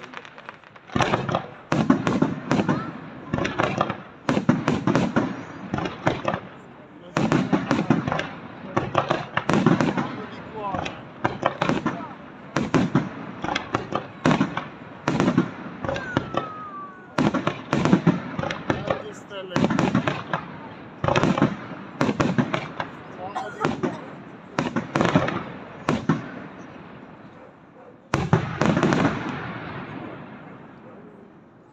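Aerial firework shells bursting in quick succession, a steady barrage of loud bangs about one or two a second, with a short lull shortly before the end and then one more loud burst.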